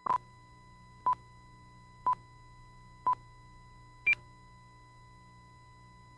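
Broadcast countdown beeps on a programme slate: five short tone pips exactly one second apart. The first four are at one pitch and the fifth is higher, counting down to the start of the programme. A faint steady low hum runs underneath.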